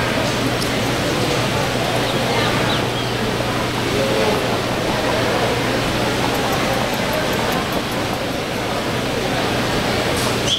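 Steady arena ambience: an even wash of noise with indistinct background voices and a constant low hum underneath.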